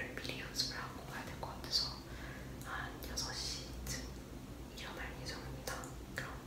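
A young woman whispering, soft breathy speech.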